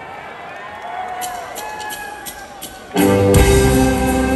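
Live Celtic punk band coming in loudly with the opening of a song about three seconds in, with sustained guitar chords, after a quieter stretch of audience noise.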